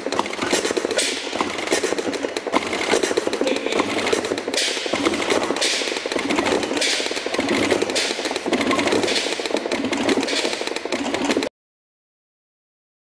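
Air brake ABS modulator valves rapidly pulsing air on and off to the service brake chambers during an ABS event: dense rapid clicking over a hiss of air. The sound cuts off suddenly near the end.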